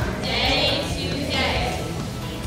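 A woman singing a children's action song into a microphone, her voice wavering in pitch over two sung phrases.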